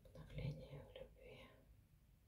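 A woman whispering and murmuring softly under her breath for about a second and a half.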